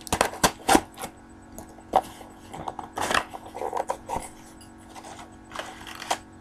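Scissors snipping through a mailed package's wrapping, with irregular sharp cuts and crinkling rustles of the wrapping as it is handled and pulled open.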